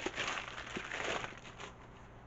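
Wrapping being crinkled and pulled off a book, a soft rustling with a few small clicks that dies down near the end.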